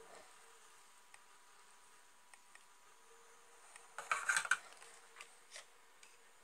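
Metal pudding mould clattering and scraping against the stove's metal grate for about half a second, around four seconds in, with a few lighter clicks after, over a faint steady hum.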